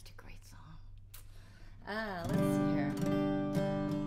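Acoustic guitar chord strummed once about two seconds in and left ringing steadily, louder than the soft voice that comes before it.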